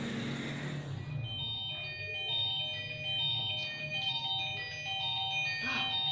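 Mobile phone ringing with a chiming, melodic ringtone that starts about a second in.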